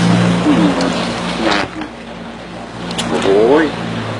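A steady low hum runs under brief voices; a man coughs and exclaims near the end.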